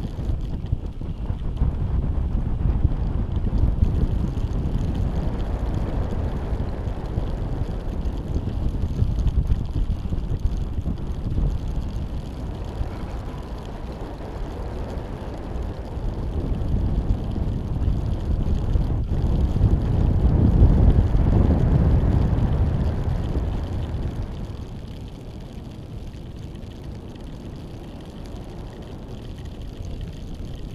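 Wind buffeting the microphone of a camera riding on a high-altitude balloon payload in flight: a steady low rumble that swells to its loudest about two-thirds of the way through, then drops to a quieter stretch near the end.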